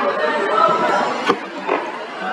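Background chatter of several voices talking, with a single sharp keyboard click about a second in as one letter is typed.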